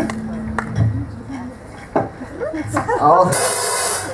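Pause between songs on an amplified rock stage: a held low note from the bass rig rings out and stops about a second in, with a few sharp clicks. Then voices talk, and a short burst of hiss comes near the end.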